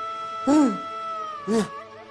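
A man's two short whining, whimpering cries, about half a second in and again near the end, over a held note of background music.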